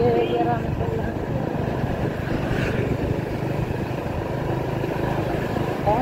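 Motorcycle engine running steadily while riding, with road and traffic noise around it.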